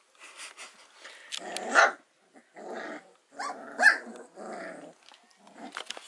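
Four-week-old standard poodle puppies play-growling and yipping as they wrestle, in a string of short bursts with two louder, higher yips, one near two seconds and one near four.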